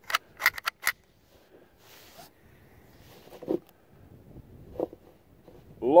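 A quick run of sharp metallic clicks in the first second as the magazine is released and changed on a Ruger 10/22 rifle, then only faint handling sounds.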